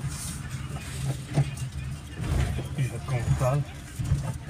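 Car driving, heard from inside the cabin: a steady low hum of engine and road noise, with indistinct voices in the car during the second half.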